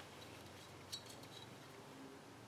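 Near silence broken by a few faint, light metallic clinks about a second in, from small metal engine parts or tools being handled on a workbench.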